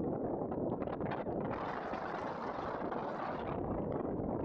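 Wind blowing across the microphone, a steady rushing rumble that grows hissier for a couple of seconds in the middle.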